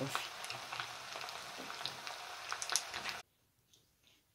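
Potatoes and pasta frying in oil in a pan, a steady sizzle with a few sharp crackles, cutting off suddenly a little after three seconds.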